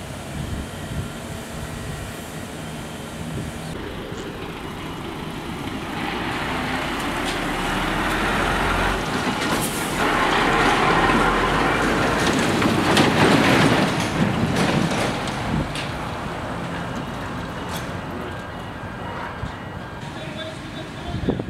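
A livestock lorry passing close by. Its engine and tyre noise builds up, is loudest about halfway through, and then fades away.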